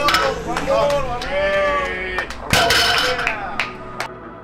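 Onlookers yelling and whooping to cheer on a deadlift, with a sudden loud burst about two and a half seconds in. The voices cut off near the end.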